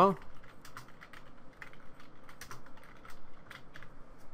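Typing on a computer keyboard: about a dozen irregularly spaced keystrokes as a short name is typed.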